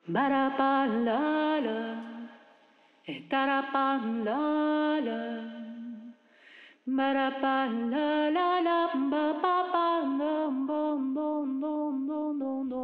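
A woman singing unaccompanied into a handheld microphone: three long phrases with wavering, ornamented notes, broken by breaths about three and six and a half seconds in.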